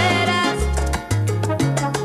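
Salsa band playing an instrumental passage between sung lines: a brass section of trombones and trumpets holds lines over a moving bass and percussion.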